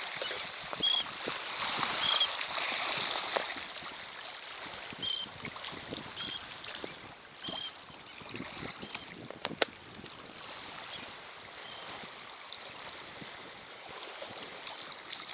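Wind and sea noise on the microphone, louder for the first few seconds, with short high chirps repeating about once a second in the first half and a single sharp click a little after the middle.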